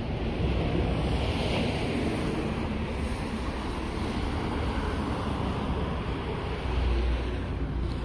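Road traffic going by close at hand: a steady rush of tyre and engine noise, with wind on the microphone. A deeper rumble swells near the end as a car passes close.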